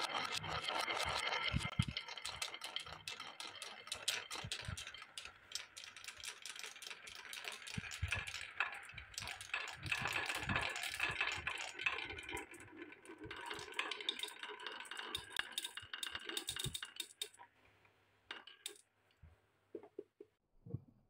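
Many glass marbles rolling and clattering round wooden spiral tracks, a dense rattle of quick clicks. It thins out and stops near the end, leaving a few last clicks.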